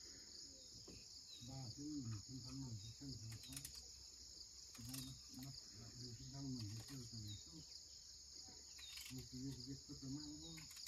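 A steady, high-pitched chorus of insects runs throughout, faint overall. Over it a man's voice speaks softly in three short stretches, with a few faint clicks.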